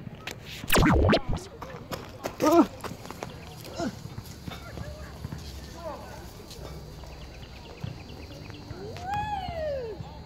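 Scattered short calls and shouts from voices, ending in one long call that rises and falls, over a low rumble of wind on a phone microphone. A loud rumbling thump of the phone being handled comes about a second in.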